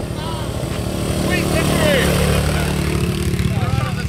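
Honda ATC 200 three-wheeler's single-cylinder four-stroke engine running hard under full throttle in a race, growing louder over the first two seconds as it comes closer, then holding steady. People shout over it.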